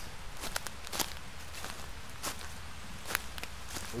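Footsteps, one step roughly every half second to a second, over a steady background hiss.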